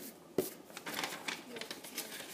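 A sheet of shiny origami paper rustling and crackling as it is handled and turned for the next fold, with one sharp click a little under half a second in.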